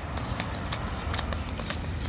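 A toddler's sandalled feet stepping and splashing lightly in a shallow rain puddle on asphalt: a quick irregular run of small wet taps and splashes over a low steady rumble.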